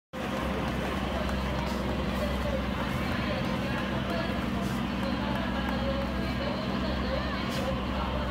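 Steady low rumble of vehicle engines running, with people's voices over it.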